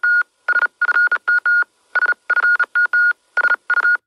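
A rapid string of electronic beeps at one steady high pitch, about a dozen of them, some short and some longer, in an uneven on-off rhythm like Morse code.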